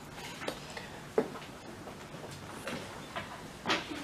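Faint handling sounds of pencil and paper on a desk in a quiet room: a few soft, short clicks and taps, the clearest about a second in.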